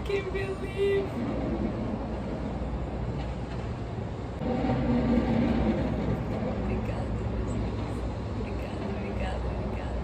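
A woman's wordless emotional vocal sounds, a short held hum in the first second and a louder voiced stretch around the middle, over a steady low background rumble.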